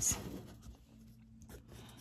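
Fine-tip 0.3 mm ink marker scratching across paper as short sketching strokes are drawn. It is faint, loudest at the very start and then dropping to a low scratchy hiss.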